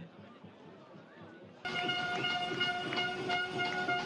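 Stadium crowd noise, faint at first, then much louder after a sudden jump about one and a half seconds in. From that moment a steady, pitched horn tone is held over the crowd.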